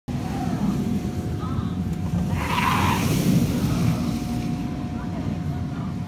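A steel roller coaster train running along its track, a steady low rumble that swells to a brief rushing burst a little over two seconds in.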